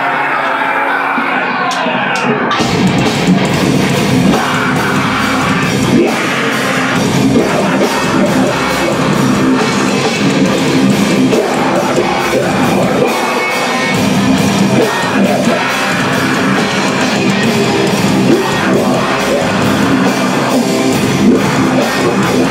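Live heavy metal band playing loud: distorted electric guitars, bass and drum kit. The drums and cymbals come in with the full band about two and a half seconds in.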